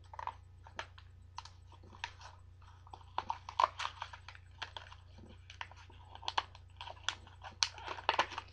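Irregular light clicks and taps of a plastic eyeshadow compact and its packaging being handled, a few a second, with clusters about halfway through and near the end.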